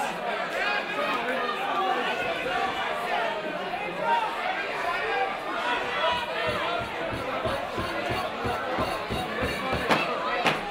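Crowd of boxing spectators talking and shouting over one another, with music playing underneath. About halfway through, a steady low beat of roughly three thumps a second comes in.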